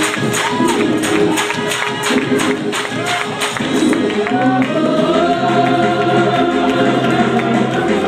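Gospel vocal group singing live with a band: a quick, even percussion beat drives the first half, then the voices hold long sustained notes over steady low accompaniment.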